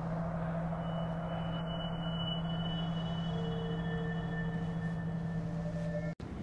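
Ambient background score: a low, steady sustained drone, with a faint high held tone coming in about a second in and a mid-pitched tone joining about halfway through.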